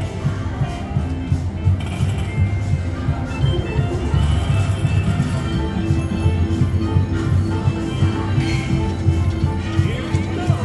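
China Mystery slot machine playing its Jackpot Streams bonus-feature music, with chiming jingles, over the steady din of a casino floor.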